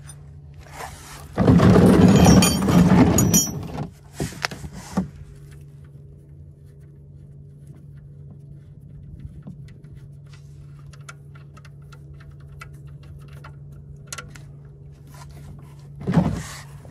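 A loud scraping noise lasting about two seconds, then a few sharp clicks and scattered light ticks of a hand tool working the oil drain plug loose under the car, over a steady low hum.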